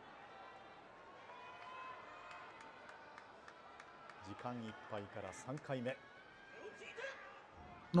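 Quiet background hiss, with a man's voice speaking faintly for about a second and a half halfway through.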